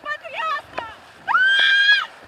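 A woman screaming in the free fall of a rope jump: a few short, high yelps, then one long, high scream held through the last part.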